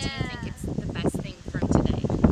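Women's voices talking, opening with a high-pitched vocal sound that falls in pitch.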